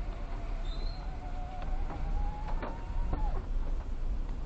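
Car cabin noise: a low engine and road rumble as the car starts to pull away, with a faint thin whine that rises slightly in pitch and cuts off with a couple of clicks a little after three seconds in.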